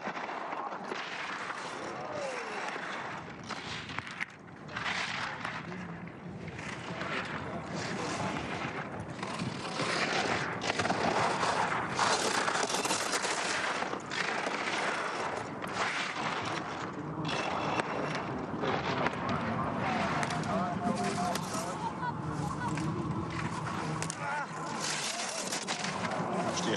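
Giant slalom skis carving on hard-packed snow: a rushing scrape from the edges that surges and breaks off about once a second, turn after turn, and grows louder over the run.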